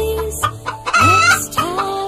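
A chicken calling over background music with a steady beat.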